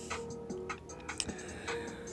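Quiet background music with a faint steady tone and a few light, irregular ticks.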